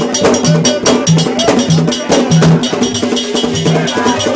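Live ceremonial percussion: a fast, steady clattering metallic beat over low drum strokes that fall about every half second.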